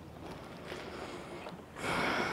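Soft breathing of a person chewing a mouthful of food, then a louder breath out near the end, a sigh of enjoyment.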